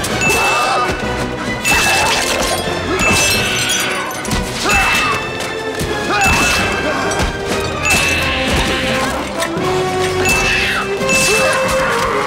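Action-film soundtrack: a driving orchestral score with a crashing, smashing hit every second or two as mummies are struck and broken apart in a fight.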